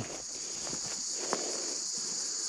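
A steady, high-pitched chorus of insects buzzing in the bush, with a few faint footsteps in grass underneath.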